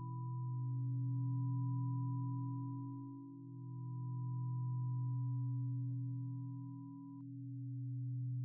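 Steady electronic sine tones for brainwave entrainment: a low drone of several pure tones that swells and fades about every three and a half seconds, with a thin higher tone above it that cuts off about seven seconds in.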